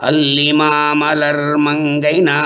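A man chanting Tamil devotional verses in a sustained, melodic recitation tone. He starts abruptly after a pause and holds long, level notes.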